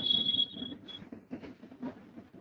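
The call's audio feed cuts back in after dead silence with a thin, high, steady tone lasting under a second, then a brief repeat of it, over faint irregular crackling room noise.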